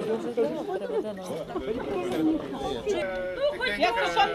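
Several people chatting in Ukrainian, voices overlapping. Near the end, steady held notes come in as an accordion starts to play.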